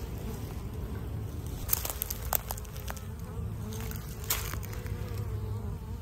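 Honeybees buzzing in a steady drone at a busy hive entrance, with a few faint clicks.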